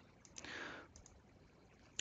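Two quick, faint clicks of a computer mouse advancing a presentation slide, followed by a soft hiss lasting about half a second.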